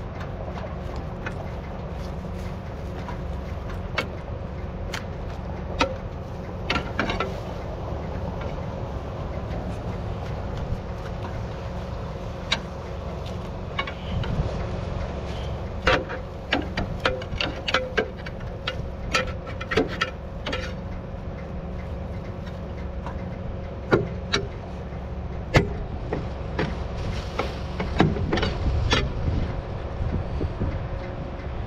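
A steel bar knocking and scraping caked mud and corn stalks off the blades of a tandem disc harrow: irregular sharp knocks, busiest in the middle and near the end. Underneath, a tractor engine idles with a steady low hum.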